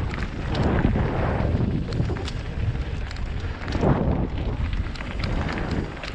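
Wind rushing over an action camera's microphone on a mountain bike riding fast down a dirt trail, with a heavy low rumble that swells about four seconds in. Tyres on the dirt and the bike's parts add many small clicks and rattles.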